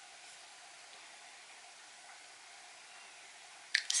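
Quiet room tone: a faint, steady hiss with no distinct sound. A few short clicks of breath or lips come near the end as speech begins.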